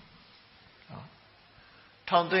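Faint hiss in a pause between spoken phrases, broken about halfway through by one short, low sound.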